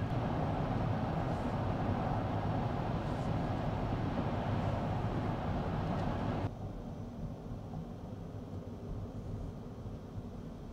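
Steady tyre and wind noise inside a Mercedes-Benz EQS SUV cabin cruising at about 70 mph, with no engine sound from the electric drive. About six and a half seconds in it drops suddenly to a quieter level.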